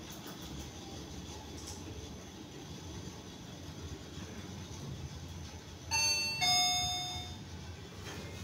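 Fujitec REXIA machine-room-less freight elevator car travelling down with a steady low hum, then, about six seconds in, a two-note falling chime sounds as it arrives at the floor.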